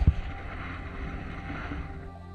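Underwater camera sound: water rushing and sloshing against the housing, with a loud low thump right at the start.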